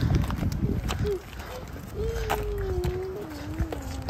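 Jogging stroller wheels rolling over asphalt, with scattered footsteps and clicks and some wind rumble. From about halfway through, a single long drawn-out vocal sound, slowly falling in pitch.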